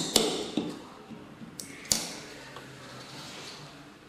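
Sharp clicks from a fiber optic cleaver as its clamp lids are pressed shut on the fiber: two quick clicks at the start and one more about two seconds in.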